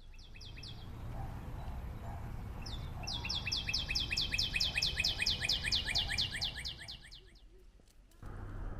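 A songbird trilling: a short run of quick, high down-slurred notes, then, about three seconds in, a long fast trill of the same notes lasting about four seconds. A low steady rumble runs underneath.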